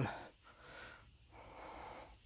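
Faint breathing close to the phone's microphone, two soft breaths.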